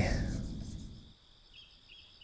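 A man's voice trailing off at the end of a sentence, then a near-silent pause in the conversation with a few faint, brief high-pitched blips.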